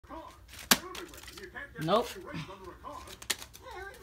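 Talking, broken by one sharp loud knock about three-quarters of a second in and a second, lighter knock near the end, the sound of a thrown object striking something hard.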